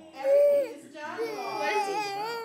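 A young child's high-pitched, wordless vocalizing: a short held call near the start, then a long drawn-out call from about a second in that bends up and down and rises near the end.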